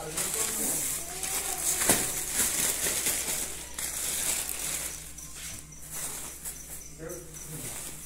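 A thin plastic bag of bread rolls rustling and crinkling as it is carried and handled, with one sharp knock about two seconds in.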